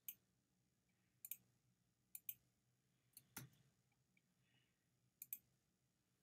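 Computer mouse button clicking about five times, faint and sharp, most clicks heard as a quick press-and-release pair.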